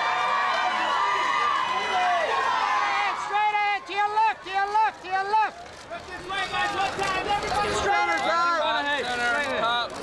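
Several voices shouting over one another, red-carpet photographers calling to the band, with a run of short, repeated calls in the middle and a brief lull after it.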